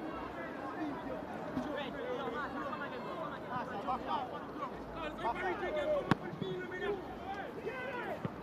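Several voices on the football pitch shouting and chattering at once, with one sharp knock about six seconds in.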